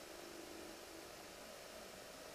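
Near silence: a faint, steady hiss of room tone with no distinct sound.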